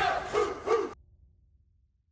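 Three short dog barks ending an audio logo sting, cutting off suddenly about a second in.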